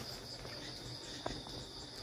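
Steady high-pitched chorus of insects, with one faint click a little past halfway.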